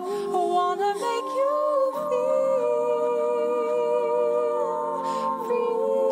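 Layered a cappella vocal harmonies built on a loop pedal: wordless hummed notes held and stacked in chords that change every second or two, with a live voice moving over them.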